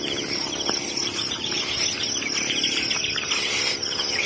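Early-morning farm field chorus: a steady, high insect drone with many birds chirping over it.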